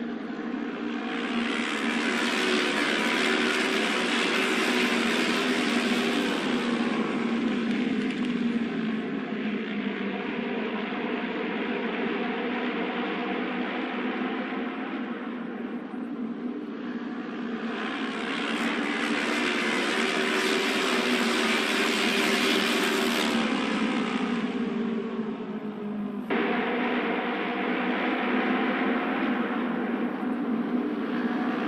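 Auto race motorcycles' 600 cc twin-cylinder engines running at speed around the oval, swelling loudly twice as the bikes come past and fading between. The sound changes abruptly about four seconds before the end.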